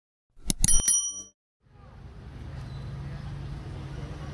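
Subscribe-button sound effects: a few sharp clicks and a short bright bell-like ding. From about a second and a half in, outdoor street background with a steady low hum and faint voices.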